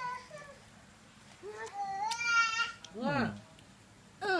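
A high-pitched, drawn-out vocal call about two seconds in, followed by a shorter call that falls steeply in pitch.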